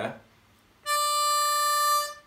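C diatonic harmonica's 4 draw note (D), played about a second in and held at a steady, unbent pitch for just over a second.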